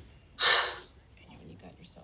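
A woman's single short, sharp breath into a close microphone, about half a second in.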